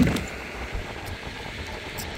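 Low, steady rumble of an electric skateboard's pneumatic off-road wheels rolling at speed on asphalt, with wind buffeting the microphone. A louder rush falls away right at the start.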